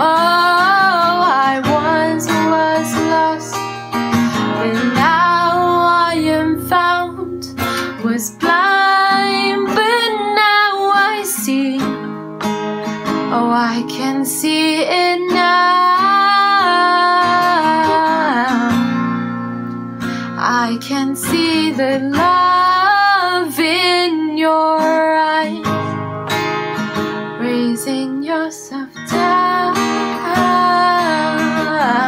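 A woman singing a slow worship song, accompanied by strummed acoustic guitar.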